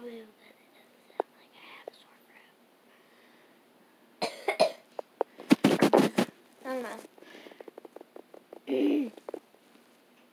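A person coughing in a few short bursts a little past halfway, the loudest about six seconds in, then a short voiced sound near the end. There are faint small clicks in between.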